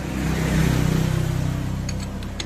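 A motor vehicle's engine driving past, swelling to a peak about a second in and then slowly fading.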